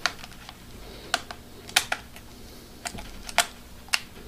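Lens dials of an American Optical 11320 minus-cylinder phoropter being turned by hand, clicking into their detent stops: about a dozen sharp, irregular clicks, some in quick pairs.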